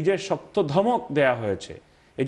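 Only speech: a man talking, with a short pause near the end.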